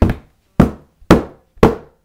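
A hammer pounding down on a folding table top, four hard strikes about half a second apart.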